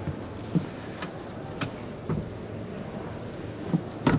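Steady low hum inside a coach's passenger cabin, with a few light clicks and knocks.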